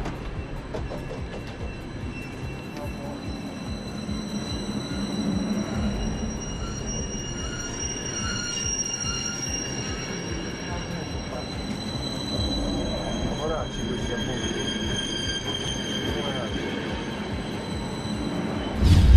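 Passenger train at a station, its wheels squealing in several long, high, steady tones over a low rumble.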